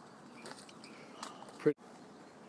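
Faint soft rustles and a few small ticks from a child walking over dry leaves and soil with a wire basket of plastic eggs. A single short spoken word comes near the end.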